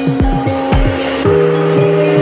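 Deep house music mixed by a DJ: a steady kick drum and hi-hats under sustained synth chords. The kick drops out a little after a second in, leaving the chords.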